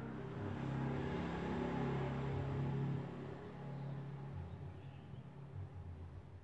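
A motor vehicle engine passing by: a low engine note that swells over the first second, holds, and fades away after about three seconds.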